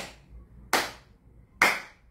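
A person claps their hands three times, evenly spaced about a second apart. The claps are sharp and short.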